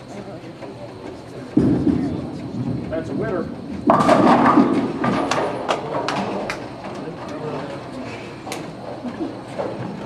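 Bowling ball landing on the wooden lane with a thud and rolling with a low rumble. A little under four seconds in it crashes into the pins, and the pins clatter with a run of sharp knocks over the next couple of seconds.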